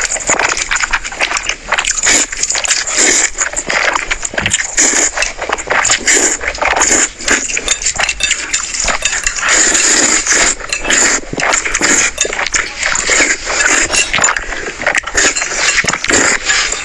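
Close-miked eating sounds of spicy noodles: loud slurping and chewing, a dense unbroken run of short wet smacks and sucks.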